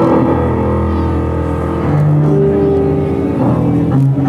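Cuban dance music playing, with long held notes over a steady low bass line.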